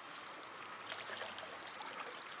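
Faint, steady wash of sea water lapping against shoreline rocks.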